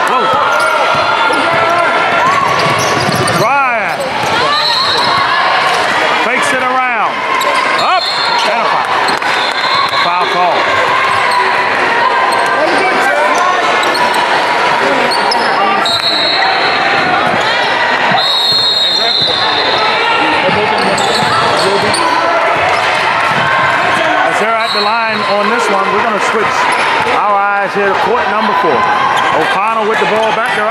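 Indoor basketball game sound: a steady wash of crowd and players' voices, the ball bouncing on the hardwood, and sneakers squeaking. A referee's whistle sounds a few times, the longest about 16 seconds in when play stops.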